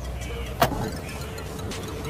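A single sharp click with a brief ring about half a second in, from the folding rear seatback's latch being worked by hand, over a steady low background rumble.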